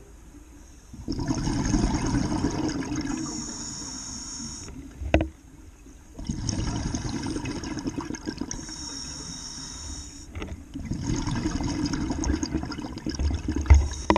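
Scuba divers' exhaled air bubbling out of their regulators underwater: three long exhalations of a few seconds each, with short quiet pauses between them for breaths in. A single sharp click comes just after the first exhalation.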